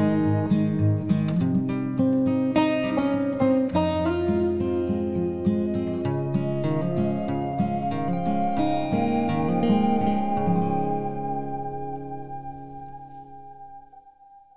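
Background music of picked acoustic guitar, fading out over the last few seconds until a single note is left ringing.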